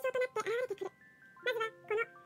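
Rapid, high-pitched, sped-up Japanese narration over music-box background music, whose chime-like notes ring on under the voice.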